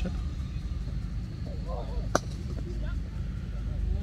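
A single sharp crack of a cricket bat striking the ball about two seconds in, over a steady low background rumble, with faint distant voices just before it.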